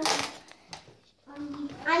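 A boy's voice speaking Turkish, with a short hiss just after the start and a quiet gap in the middle before he starts speaking again.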